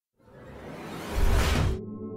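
Logo-reveal whoosh sound effect: a rushing swell that rises out of silence over about a second and a half, heaviest with a deep rumble at its loudest, then cuts off suddenly. Ambient music with sustained tones starts right after it.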